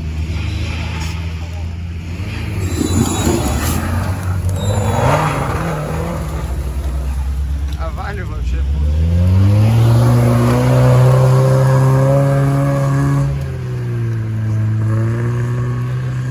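Off-road 4x4's engine working hard on a steep forest hill climb: it rises sharply about nine seconds in and holds at high revs, dipping briefly near the end. Spectators' voices are mixed in.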